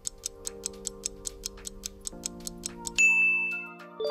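Countdown timer sound effect: fast ticking, about five ticks a second, over a held synth chord that shifts about two seconds in. About three seconds in the ticking stops and a loud single ding rings out and fades, marking time up.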